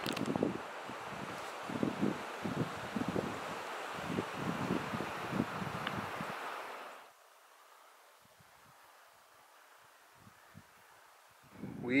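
Wind buffeting the microphone: a steady rushing with irregular low thumps. It cuts off suddenly about seven seconds in, leaving near silence.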